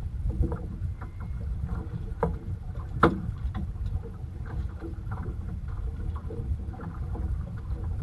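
Water slapping and lapping against the hull of a small boat drifting at sea, over a steady low rumble, with scattered small knocks and clicks. One sharp click about three seconds in is the loudest sound.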